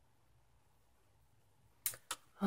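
Near-silent room tone, then one short, sharp tap near the end, the kind a small hard object makes when set down on a hard surface.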